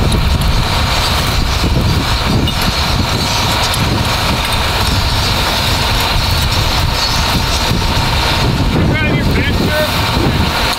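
Strong wind buffeting the microphone in a heavy, fluttering rumble, over the steady drone of an idling engine. Brief voices come in near the end.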